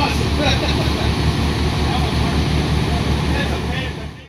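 Aerial ladder fire truck's diesel engine running with a fast, even low throb, with voices faint over it.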